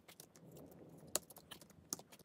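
Cardboard parts of a hydraulic-arm kit being handled and dropped onto small wooden pegs: faint rustling with a few sharp clicks, the loudest just past the middle and another near the end.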